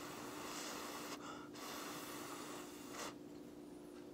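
A man slurping at a forkful of instant ramen noodles: two long, hissing rushes of air, the second ending about three seconds in.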